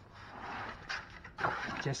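Soft rustling and scraping with a light knock about a second in as a chest freezer cabinet is handled and tilted among its foam packing, followed by a man's voice.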